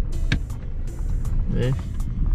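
Car driving slowly, heard from inside the cabin: a steady low road and engine rumble. Music with a steady beat plays over it.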